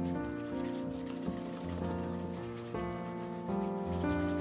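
A cloth rubbing quickly back and forth over a leather dress shoe, wiping the sole edge and upper in fast strokes, over background music.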